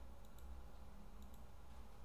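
A few faint computer mouse clicks, in two quick pairs, over a low steady hum.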